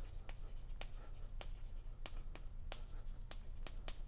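Chalk writing on a blackboard: a run of sharp chalk taps and clicks, about three a second, over a steady low room hum.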